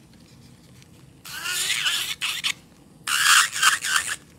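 Electric nail drill with a white bit grinding under the tip of an acrylic nail to clean the underside. It comes in two short bursts of scraping noise with a wavering high tone, about a second in and again near the end, the second louder.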